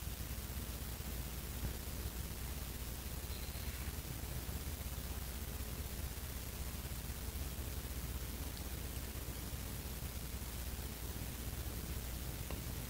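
Faint steady hiss with a low hum beneath it: room tone, with no distinct event.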